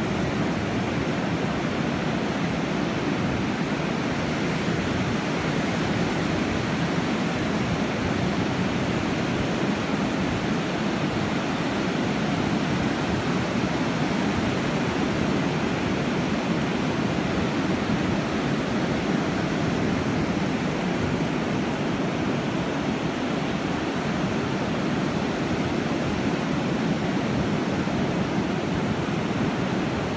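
Ocean surf breaking and washing up a flat sandy beach, a steady unbroken rush of water.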